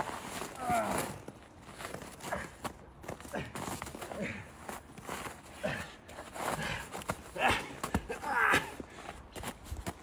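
Feet scuffling and shifting in snow as a man wrestles a brown bear, with short vocal sounds breaking in throughout.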